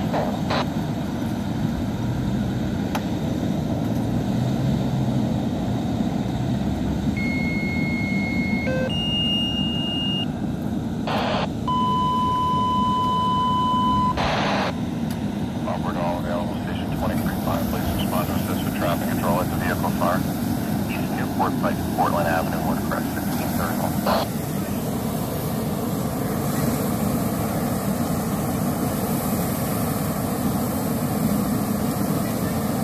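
Steady rush of a fire hose spraying water onto a burning SUV over the drone of a fire engine and its pump. About seven seconds in, a radio sends a series of steady alert tones, two short higher ones and then a longer lower one, with short bursts of static between. Faint radio voices follow.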